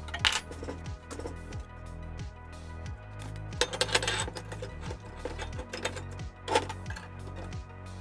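Background music with a steady low beat, over which steel parts clink sharply a few times: once near the start, several times around four seconds in and once more about six and a half seconds in, as a steel pipe and the nuts and threaded rods of a welded steel jig are handled.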